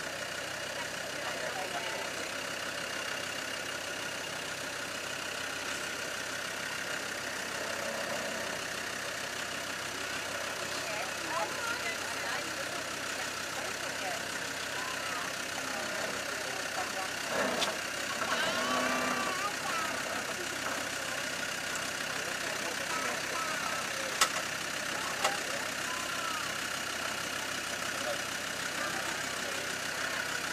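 Land Rover Discovery 2's Td5 five-cylinder turbodiesel idling steadily as the vehicle crawls slowly down a rocky descent, with two sharp knocks about a second apart about two-thirds of the way through.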